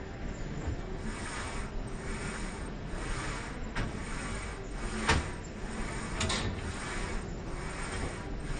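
Weight-stack exercise machine worked through repetitions: a rhythmic sliding sound about once a second, with a few sharp metallic clacks, the loudest about five seconds in.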